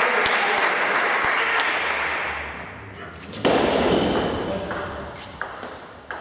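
Celluloid table tennis ball clicking a few times, sharp single knocks of ball on table or bat. Indistinct voices fill the first two seconds and fade. A sudden louder burst of noise about three and a half seconds in dies away over a couple of seconds.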